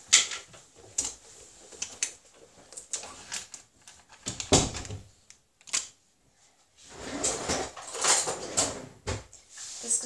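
Kitchen handling noises as a plastic pot of natural yogurt is opened and spooned into a glass mixing bowl: irregular clicks, knocks and rustles, with one louder thump about halfway through.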